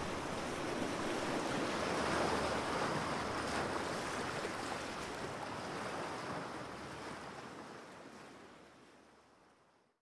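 A steady rushing noise that swells about two seconds in, then fades out slowly over the last few seconds.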